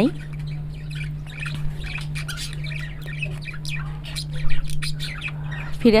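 Gourd and shrimp curry simmering in a pot: many quick, irregular bubbling pops over a steady low hum.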